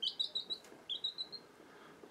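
Newly hatched baby chicks peeping in a brooder: a quick run of short high peeps, then a second run about a second in.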